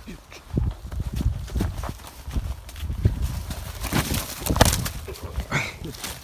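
Footsteps running over grass in an irregular series of thuds, with clothing and handling noise on the microphone.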